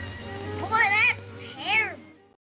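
A pet animal crying twice, two short high-pitched calls that each rise and fall, over faint music from an old film soundtrack.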